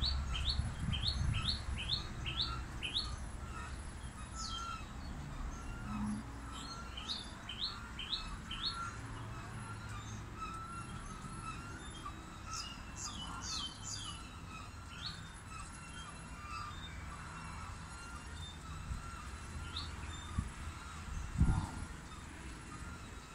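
A small bird calling in runs of five or six short, quick, high notes, about two to three a second, with pauses between the runs and a single note later on. There is low wind or handling rumble at first and a short thump near the end.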